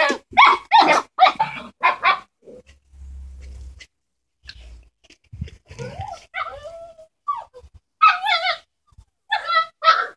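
Dalmatian puppies barking: a quick run of short, high-pitched barks in the first two seconds, then more scattered barks and yelps near the end.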